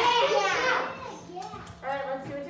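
Young children's voices speaking, reading a word aloud, for about the first second, then a short burst of voice again near the end.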